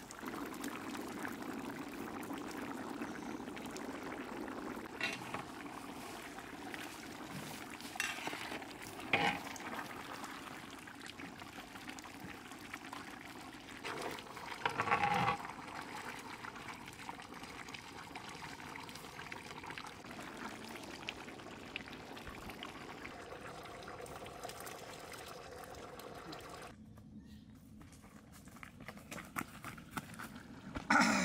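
Thick curry simmering and bubbling in a large aluminium cooking pot, with a few short scrapes and knocks of a ladle stirring it, the loudest about fifteen seconds in.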